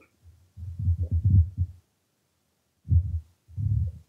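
Muffled low thumps and rubbing on a clip-on lapel microphone as its wearer moves, in three bursts: a longer one in the first two seconds, then two short ones near the end.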